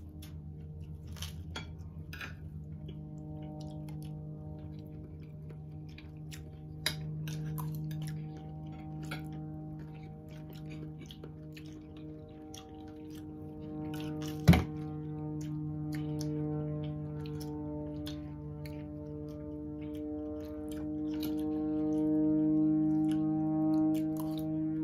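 A steady background drone of several held low tones, swelling louder near the end, which sounds like airplanes flying overhead. Over it come soft chewing and small clicks of forks on plates, with one sharp knock about halfway.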